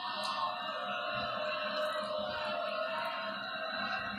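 Steady, held tone-like sound from a television broadcast, without speech.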